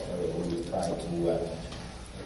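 A person speaking: continuous talk that the speech recogniser did not transcribe.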